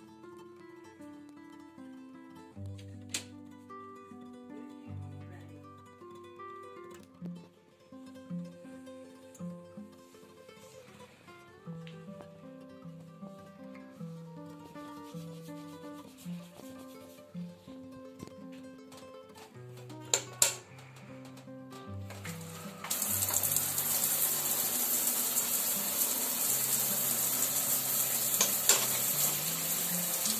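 Soft background music with plucked notes. About twenty seconds in there is a brief sharp clatter, and a few seconds later a handheld shower head starts spraying water, a loud steady hiss under the music.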